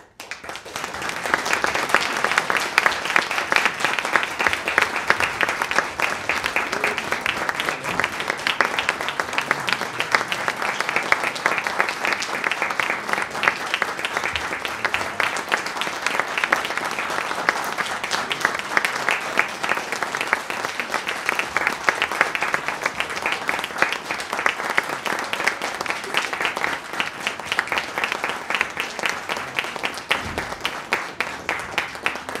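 A concert audience bursts into applause out of silence, then keeps clapping steadily and densely.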